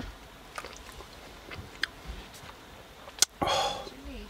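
A man sipping hot coffee from an insulated bottle: a few faint slurps and swallowing clicks, then a sharp click and a short breathy sound near the end.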